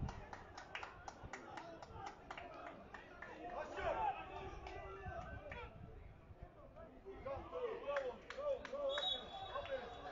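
Faint, distant voices shouting and calling in sing-song lines across an open football stadium, with scattered sharp clicks, as players celebrate an equalising goal. The calls rise around four seconds in and again near the end.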